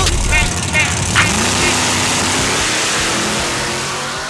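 Muscle car accelerating hard away down a drag strip. About a second in, its engine note rises over a loud rush of exhaust, then slowly fades as it pulls away.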